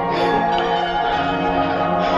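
Background music built on ringing, bell-like tones over held lower notes, pulsing about twice a second.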